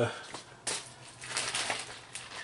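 Packaging rustling and crinkling as it is handled, starting suddenly about half a second in and going on in uneven bursts for about a second.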